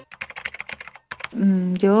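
Rapid computer-keyboard typing clicks, a sound effect, over about the first second. A woman's voice then begins speaking.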